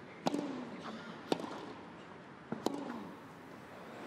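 Tennis rally on grass: racquet strings striking the ball three times, sharp hits roughly a second and a quarter apart.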